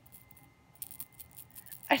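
Small hollow plastic toy baby rattle, a G1 My Little Pony accessory, shaken briefly: a short run of faint, light rattling clicks in the second half.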